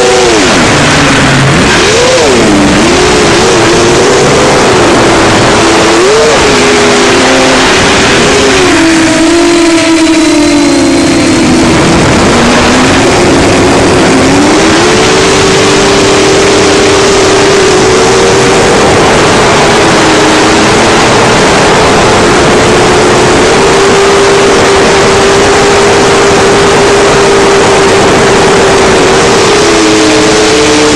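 FPV quadcopter's four Racerstar BR2507S brushless motors spinning HQ 7x4x3 three-blade props, heard close on the onboard camera: a loud buzzing whine whose pitch swings up and down with throttle in the first half, then holds fairly steady, over heavy wind and prop-wash noise.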